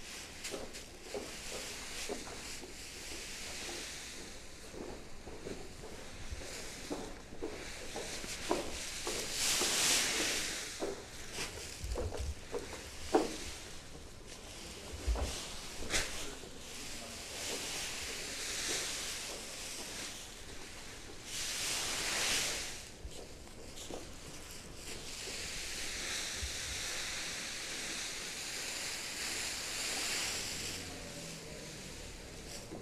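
Fresh green hop cones rustling as they are tipped out of a hessian sack onto the kiln floor, with boots shuffling through the loose hops. There are scattered small crunches and rustles, and longer rushes of pouring about ten seconds in, again a little after twenty seconds, and near the end.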